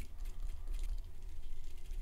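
Light, irregular clicking and ticking from a dubbing loop tool being spun by hand, twisting ice dub into a fly-tying thread loop, over a steady low rumble.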